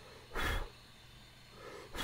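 A single short, sharp breath close to the microphone, about half a second in.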